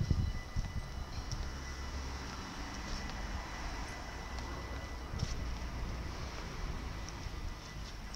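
Steady low rumble with a thin, steady high-pitched whine from a standing NS Mat '64 (Plan V) electric trainset, heard from some way off along the platform.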